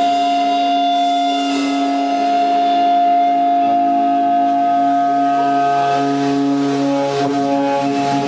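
A live rock band holds long, sustained amplified notes that ring on as a drone, with a couple of cymbal hits about a second in.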